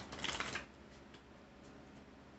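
A deck of tarot cards being shuffled: a short burst of rapid card flutter in the first half second, then a few faint taps as the cards are handled.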